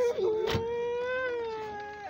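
A woman's long wailing cry of grief, one drawn-out note held for about two seconds and sagging slightly at the end. A sharp knock cuts across it about half a second in.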